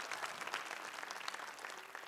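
Congregation applauding, dense clapping that slowly dies away.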